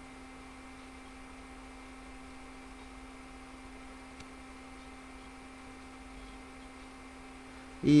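A faint steady electrical hum with one low tone held level throughout: the recording's background hum, with no other sound. A man's voice starts right at the end.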